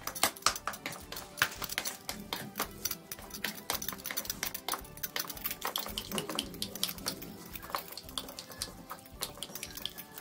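Orange plastic ravi (wheel-headed masher) beating steamed taro leaves in a non-stick kadai: a rapid, irregular run of knocks and clicks against the pan as the wet leaves are mashed to a paste.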